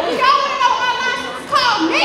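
A woman singing solo into a handheld microphone, holding one long high note with a slight waver, then sliding down to a lower note near the end.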